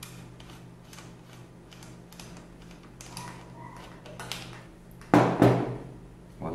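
Small metallic clicks and scrapes as a Chinese PCP air-rifle valve is unscrewed by hand from its threaded bushing on the rifle frame, with two louder knocks about five seconds in. A faint steady hum lies underneath.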